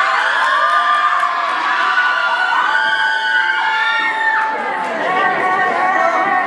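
A school audience of teenage students cheering, whooping and shouting, many voices at once with calls that slide up and down in pitch.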